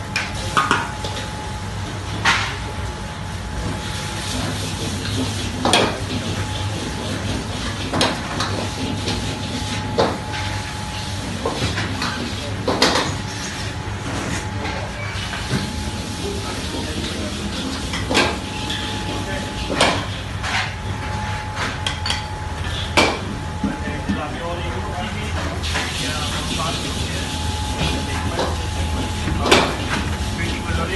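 Commercial kitchen ambience: a steady low hum with a faint steady high tone from running equipment, broken every second or two by sharp knocks and clinks of dishes, containers and utensils being handled.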